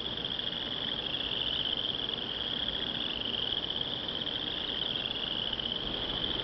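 Crickets trilling in a steady, high-pitched chorus that runs on without a break.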